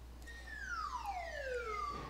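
A single whistle-like sound effect from an e-textbook animation, gliding steadily downward in pitch for about a second and a half.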